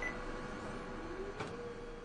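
Intro sound effect of steady hiss with a faint hum, a short high beep at the start and a click about one and a half seconds in, slowly getting quieter.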